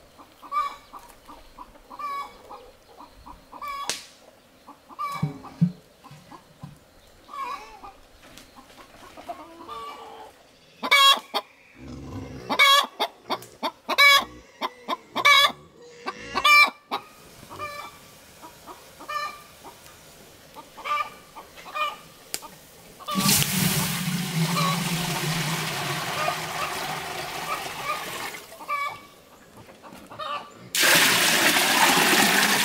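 Chickens clucking in a string of short calls, building to a louder, faster run of calls in the middle. Near the end comes about six seconds of steady rushing noise, water being poured.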